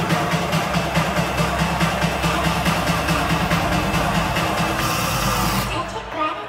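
Live electronic bass music played loud over a big venue's sound system, heard from among the crowd: a fast, even beat over a pulsing bass line. A high hiss comes in shortly before the end, and the music then cuts off.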